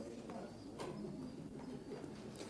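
Faint room sound of a meeting chamber: low murmuring voices with a few soft clicks and rustles.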